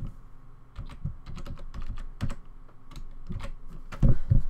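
Typing on a computer keyboard: a run of short, irregularly spaced keystrokes.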